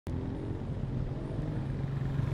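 Small motorcycle engine running as a motorcycle taxi rides up close, with a steady engine note that rises slightly in pitch about halfway through.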